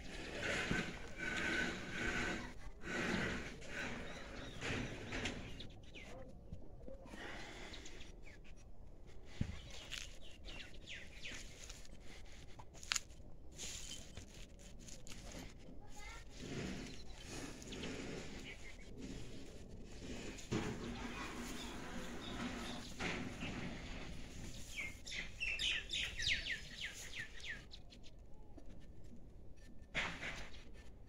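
Birds chirping over farmyard ambience, with a few sharp clicks and a quick run of high chirps near the end.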